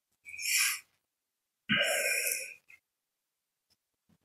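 Two breathy exhalations close to the microphone: a short one near the start and a longer, sigh-like one about a second and a half in.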